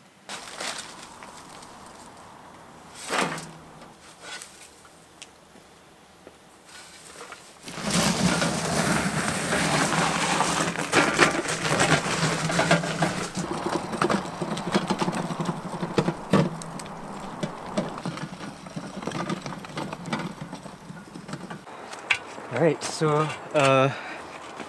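Loaded wheelbarrow pushed over gravel: a steady crunching, rattling rumble that starts about a third of the way in and runs until shortly before the end. Before it there are a few scattered knocks and scrapes.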